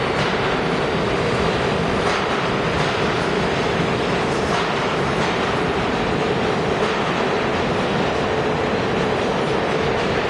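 New York City subway train running through an underground station at speed: a loud, steady rumble of steel wheels on rail with a few clacks over the rail joints and a steady hum.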